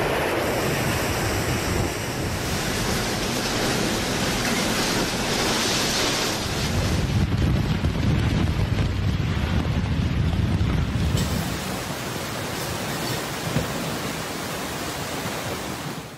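Hurricane-force wind and driving rain, a dense steady rush, with gusts buffeting the microphone in heavy low rumbles from about seven to eleven seconds in.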